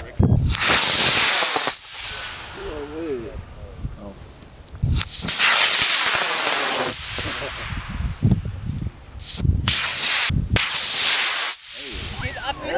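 Amateur rocket motor running with a loud hiss in several separate bursts of one to two seconds, each starting and stopping abruptly.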